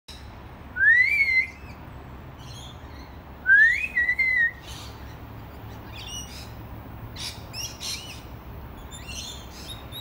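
Wild birds calling. Two loud rising whistles, about a second in and again at three and a half seconds, each ending in a short warble, are followed by a run of short chirps and twitters.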